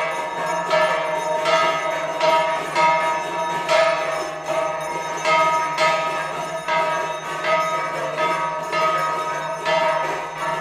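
A bell rung steadily for the aarti, about three strokes every two seconds, each stroke ringing on into the next.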